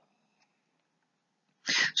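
Near silence, then near the end a short, sharp breathy sound from the lecturer's voice just before he goes on speaking.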